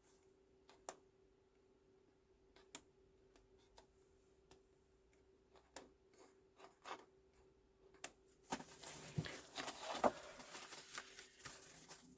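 Faint, scattered taps and knocks of a small clear acrylic stamp block against paper and the work surface, then a few seconds of paper rustling and sliding as the large stamped sheet is moved near the end.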